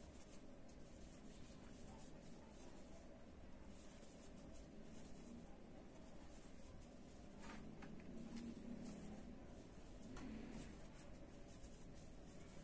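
Near silence, with only the faint rustle and scratch of an aluminium crochet hook drawing cotton yarn through stitches as double crochets are worked.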